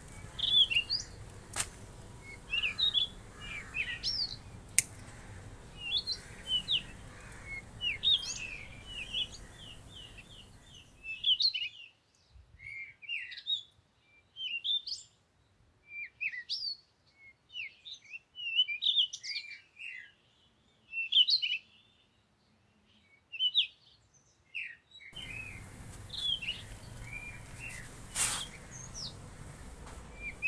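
Small birds chirping busily, many short high chirps one after another. A few sharp clicks in the first few seconds and again near the end.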